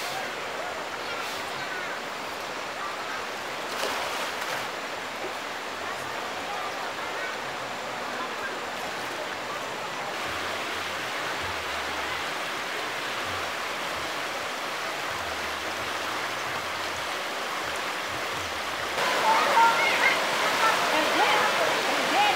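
Shallow river rushing steadily over rocks and stones. About three seconds before the end it gets louder, with voices over the water.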